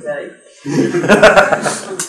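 Chuckling laughter mixed with speech, breaking out about half a second in and lasting over a second.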